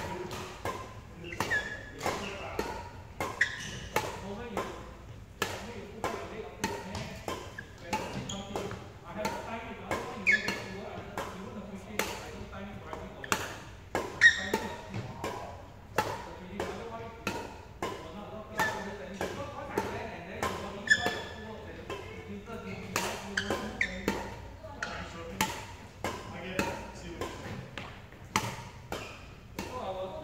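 Badminton racket strings striking a shuttlecock in a fast back-and-forth drill: sharp hits about twice a second, one after another, in a large hall.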